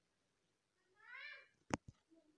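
A single short call, about a second in, whose pitch rises and then falls, followed by two sharp clicks close together.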